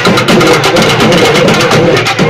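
Urumi melam ensemble playing: fast, dense stick strokes on double-headed barrel drums, with the urumi drums' wavering pitch rising and falling over the rhythm.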